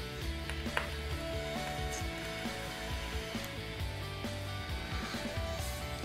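Background music with held notes at a steady level.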